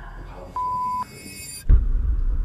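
A TV censor bleep: a single steady beep tone about half a second long, about half a second in, covering a word of an exclamation. Near the end a sudden loud low thump.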